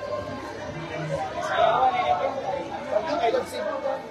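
Indistinct chatter of people talking.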